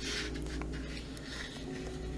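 Soft, steady background music made of sustained low held tones, with a brief soft hiss right at the start.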